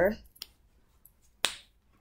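A yellow snapper fidget toy snapping once, a single sharp snap about one and a half seconds in, after a faint click.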